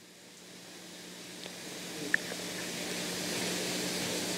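Background hiss of room tone slowly swelling louder, over a steady low electrical hum, with one faint click about two seconds in.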